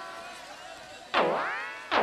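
Comic electronic 'boing' sound effect played in repeats, each note swooping down in pitch and springing back up to a held tone. A decaying note carries in at the start, and new swoops hit about a second in and again near the end.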